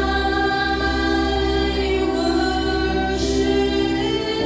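Worship music: a choir singing long held notes over a steady low bass, typical of a church worship song.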